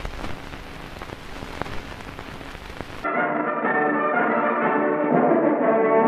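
Hiss and crackle of an old film soundtrack with a few sharp clicks. About halfway through, brass-led orchestral title music starts abruptly, thin-sounding with no deep bass or high treble, as on an old optical film soundtrack.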